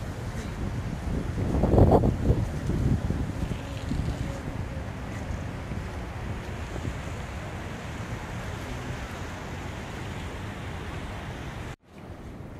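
Steady rush of water falling down the walls of a 9/11 Memorial reflecting pool, with a louder swell about two seconds in. It cuts off suddenly near the end.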